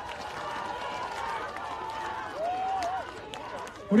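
Large outdoor rally crowd cheering and calling out, with scattered sharp claps and clacks, the noise slowly dying down.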